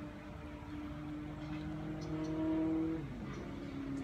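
A motor vehicle's engine running nearby: a steady hum that rises a little in pitch and level, then drops back about three seconds in.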